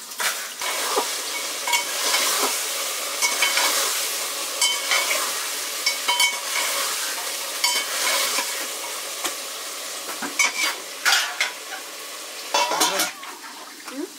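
Food sizzling in a metal pan over a wood fire, with a metal utensil clinking and scraping against the pan as it is stirred every second or so. Louder clattering comes about three-quarters of the way through.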